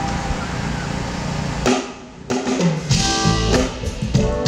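Live smooth-jazz band starting a song: a sustained wash of sound fades out, then a little over two seconds in the drum kit and bass come in with a laid-back, funky groove.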